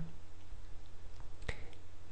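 A computer mouse clicking on-screen calculator buttons. One sharp click comes about one and a half seconds in, with a few fainter clicks around it, over a low steady hum.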